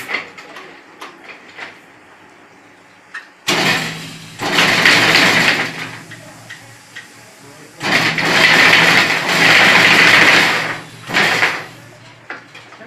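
Semi-automatic chain link fence making machine running in two bursts of a few seconds each, a loud metallic rushing with a steady motor hum underneath. Light clicks and clinks of wire being handled come before and between the runs.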